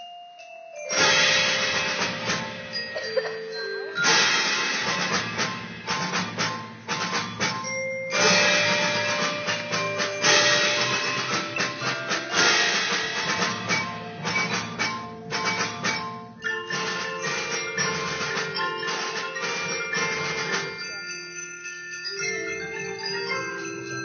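High school percussion ensemble playing on marimbas and other mallet keyboard instruments, with ringing pitched notes. The music starts about a second in, with loud accented strikes every few seconds.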